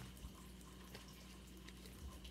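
Near silence: quiet room tone with a faint low hum and a few faint soft ticks.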